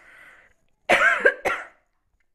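A woman coughing twice in quick succession about a second in, after a faint breath in.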